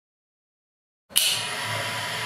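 A grinder demo rig's motor is switched on about halfway in, starting abruptly after silence and then running steadily with a faint high steady tone over its running noise. The rotor carries a plasticine correction mass and is now balanced, its vibration down to about 0.5 mm/s.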